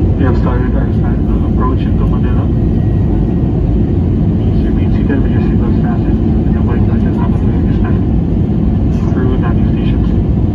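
Jet airliner cabin noise beside the wing-mounted turbofan engine: a loud, steady rumble of engine and rushing air with a low hum. Muffled voices come through at times.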